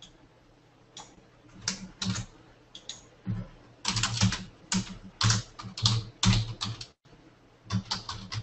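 Typing on a computer keyboard: irregular clusters of keystrokes, sparse at first and busiest around the middle.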